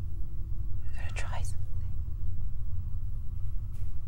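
A short whisper about a second in, over a steady low rumble.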